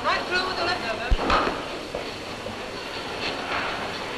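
Indistinct voices talking over the hiss of an old film soundtrack, with a single sharp thump about a second in.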